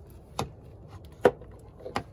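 Three sharp clicks and knocks of hard parts handled while the EGR valve is being reinstalled on the engine, the middle one loudest.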